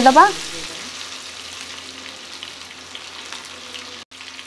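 Sliced onion sizzling in hot mustard oil in a flat iron tawa: a steady frying hiss.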